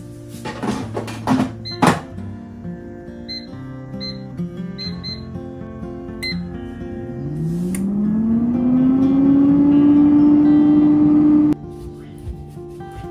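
A few knocks, then a digital air fryer's touch panel beeping with several short button presses. Its fan motor then spins up, its hum rising in pitch over a couple of seconds and running on steadily until it breaks off near the end.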